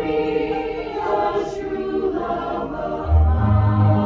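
Choir singing in harmony with keyboard accompaniment; strong low bass notes come in about three seconds in.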